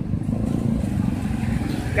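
Roadside traffic: a steady low rumble of passing motorcycles, tricycles and other vehicles' engines.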